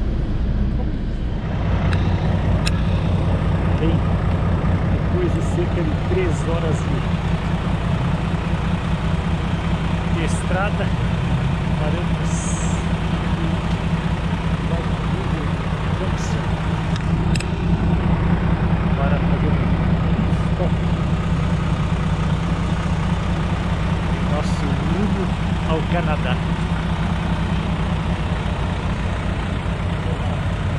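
Coach bus engine idling steadily close by, a constant low hum.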